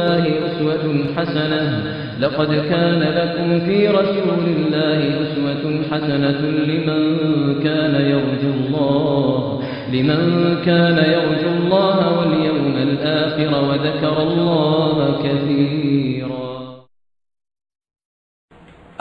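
Melodic religious vocal chanting: one continuous sung line that glides up and down in pitch, fading out near the end.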